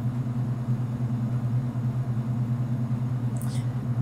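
Steady low hum of laboratory equipment running, with a faint brief sound near the end.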